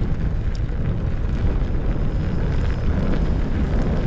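Steady low rumble of wind buffeting the microphone while riding an electric unicycle along a dry dirt trail, with a few faint ticks of grit under the tyre.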